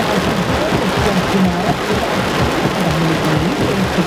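Torrential thunderstorm rain pelting a parked car's roof and windscreen, heard from inside the car as a dense, steady hiss. A low wavering tone comes and goes beneath it.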